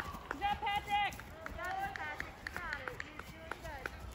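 Spectators shouting encouragement to cross-country runners, with the runners' footsteps on a grass trail.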